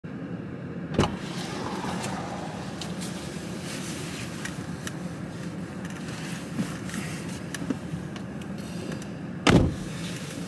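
Inside a car cabin: a steady low hum under the handling noises of someone getting settled in the driver's seat. There is a sharp thump about a second in, scattered small knocks and clicks, and a loud thump near the end.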